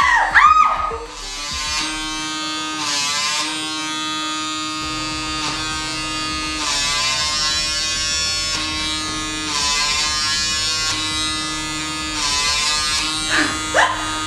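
PMD Personal Microdermabrasion wand's vacuum motor buzzing steadily as it is worked over the forehead, its pitch dipping briefly about four times. A short laugh comes right at the start.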